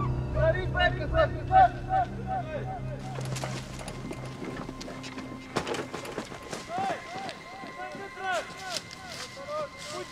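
Men shouting orders in Romanian, 'Get out!' and later 'Stop or I'll shoot!', over the low hum of an idling truck engine that stops about three seconds in. Scattered thuds of running feet follow.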